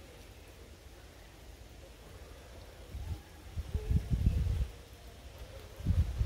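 Quiet outdoor background, then irregular low rumbling bursts of wind buffeting the microphone and handling noise from the moving camera, about three seconds in and again near the end.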